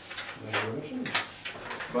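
Paper handling at a meeting table: pages rustling and a few sharp clicks, with a short low hum about half a second in.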